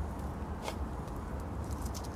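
A teaspoon working perlite-flecked compost around a small cactus in its pot, giving a couple of faint light scrapes, over a steady low hum.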